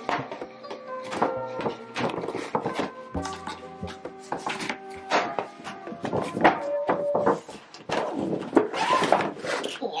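Background music over irregular crackles and rustles of a stiff paper shopping bag being handled and opened.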